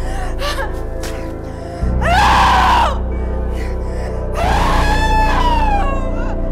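A woman's two high-pitched screams, each about a second long, over a steady low drone of dark dramatic music; the second scream falls in pitch at its end.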